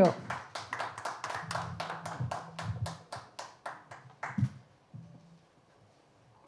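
A small audience clapping, about five claps a second, thinning out and stopping about four and a half seconds in.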